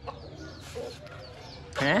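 Chickens clucking softly, with faint short high calls, before a person's voice comes in loudly near the end.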